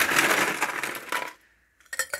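A metal scoop digging into a bin of ice cubes, a dense rattle and crunch lasting just over a second, then a few clinks of ice going into a glass near the end.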